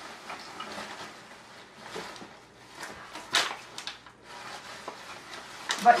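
Plastic garbage bag rustling and crinkling as bed sheets are stuffed into it, with a sharper crackle about three and a half seconds in.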